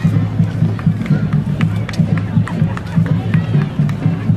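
High school marching band playing as it marches past, with low brass from sousaphones under sharp drum strikes, and crowd voices around it.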